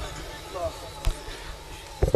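Faint background murmur of people talking, with a few dull low thumps and a sharp click about a second in.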